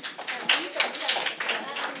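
Small audience applauding: many hands clapping at once.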